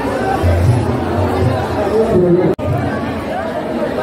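A crowd of people talking at once, a busy babble of many voices with faint music underneath. The sound drops out for an instant about two and a half seconds in.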